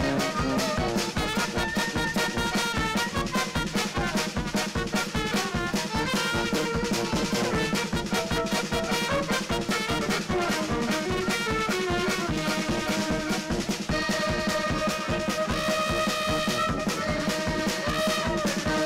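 A klezmer band playing live on accordion, violin, trumpet, tuba and drum kit, with a steady beat. Several notes are held together about fourteen seconds in.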